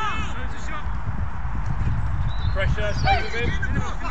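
Footballers shouting to one another across an outdoor pitch: a short call at the start and a louder run of shouts about two and a half to three and a half seconds in, over a steady low rumble.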